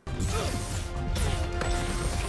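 Animated action-cartoon fight audio: background score music under crashing impact and laser-beam blast sound effects, starting suddenly.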